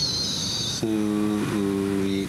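A voice slowly sounding out 'soos': a long hissed 's' that stops under a second in, then an 'oo' vowel held at one steady pitch, with a brief break partway through.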